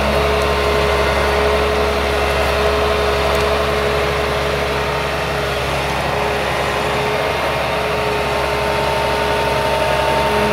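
Ecolog 574E forwarder's diesel engine and crane hydraulics running steadily under load, with an even whine over the engine note while the crane handles a bundle of spruce branches.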